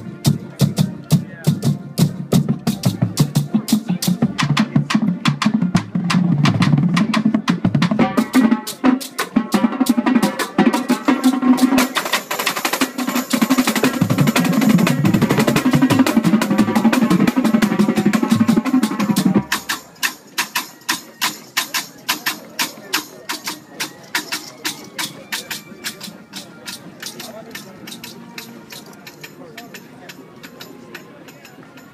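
Marching drumline battery (snare drums, tenor drums and bass drums) playing a fast, tightly rhythmic exercise in unison. About two-thirds of the way through the bass drums drop out and the snares carry on alone with sharp strokes that grow quieter toward the end.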